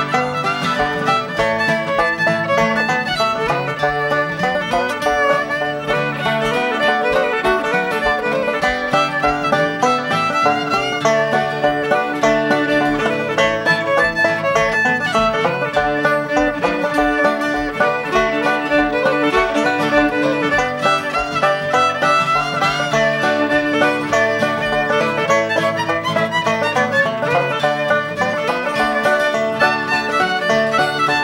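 Old-time string trio playing an instrumental fiddle tune in the key of D. The fiddle leads over banjo and acoustic guitar with a steady, even beat.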